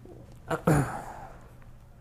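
A person's brief wordless vocal sound, falling in pitch, about two-thirds of a second in, preceded by a small click; otherwise a low steady hum.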